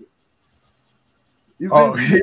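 A pen scratching on drawing paper in quick, faint strokes, cut off near the end by a man saying "Oh."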